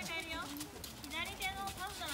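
A voice calling out, with the hoofbeats of a horse moving over a sand arena.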